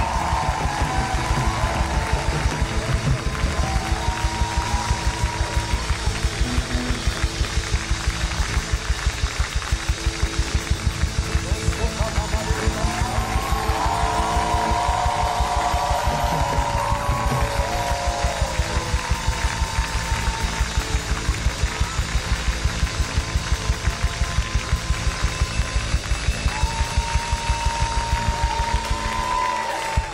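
Live church worship music: a fast, steady beat of about three hits a second with congregational hand clapping, and voices singing and chanting over it. The beat stops right at the end.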